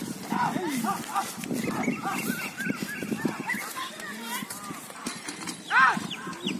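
Men shouting and calling out to drive a yoked pair of bullocks, a run of quick, short calls in the middle and a loud shout near the end.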